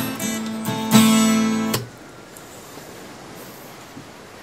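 Acoustic guitar strumming chords, the last chord struck about a second in and ringing until it cuts off suddenly just before two seconds in. A faint hiss follows.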